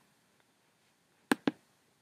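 Two sharp clicks about a fifth of a second apart, from the computer controls being pressed to advance a slide; otherwise near silence.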